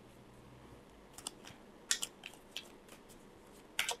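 Deck of tarot cards being shuffled by hand: faint, scattered crisp snaps and slaps of cards against each other, loudest about two seconds in and again near the end.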